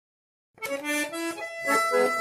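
Two bandoneons begin playing a chamamé together, coming in sharply about half a second in after silence.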